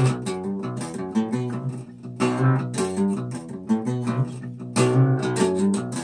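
Epiphone cutaway acoustic guitar playing an instrumental chord passage on its own. Sharp picked attacks come about every half second to a second, and the notes ring on between them.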